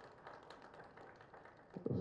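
A pause between spoken phrases: faint room tone with a few faint ticks, and a man's voice starting again near the end.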